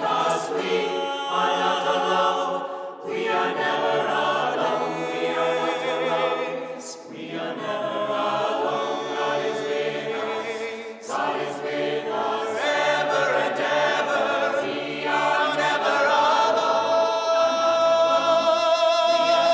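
Mixed choir of men's and women's voices singing a cappella in harmony, in phrases about four seconds long, growing louder near the end.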